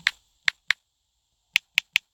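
Taps on a smartphone's touchscreen keyboard: six short, sharp clicks in two groups of three.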